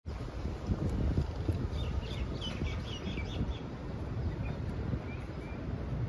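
Wind noise on the microphone, with a bird chirping a quick run of short, high notes from about two seconds in and a few fainter single chirps later.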